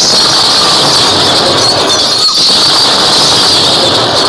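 A loud, steady high-pitched hiss with a squeal running through it, which fades as the stage goes dark.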